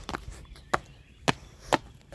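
A series of sharp taps, four in two seconds at an uneven pace.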